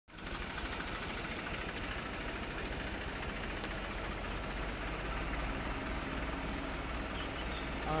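Diesel farm tractor engine running steadily as the tractor pulls away, a continuous low hum.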